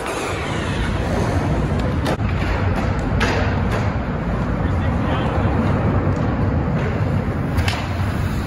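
A steady low rumble with a few sharp skateboard clacks on concrete, about two seconds in, around three seconds and near the end.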